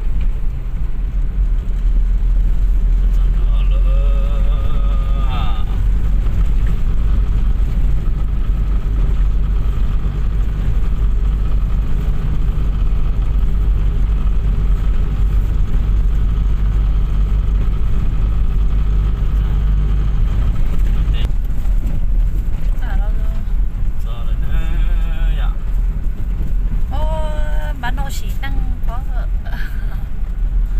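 Steady low rumble of a car's engine and tyres on the road, heard from inside the moving car's cabin. Brief voices come in a few seconds in and twice near the end.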